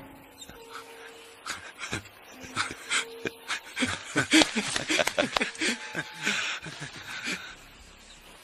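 A man panting in rapid, ragged breaths with small whimpering sounds, the breaths coming thickest from about two seconds in.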